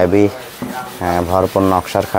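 A man's voice speaking in short phrases, with a brief quieter gap of faint rustling noise between them.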